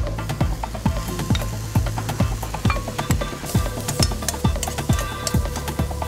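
Background music with a steady beat of about two thumps a second, over the sizzle of chickpeas frying in a pan of spiced paste, with the scrape and clink of a spoon stirring them.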